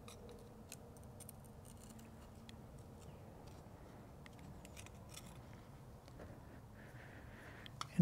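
Faint scattered clicks and light taps from handling a plastic fuel meter body and small metal parts, over low room tone.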